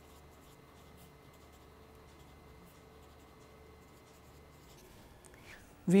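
Felt-tip marker writing on paper: a faint series of short strokes as words are written out.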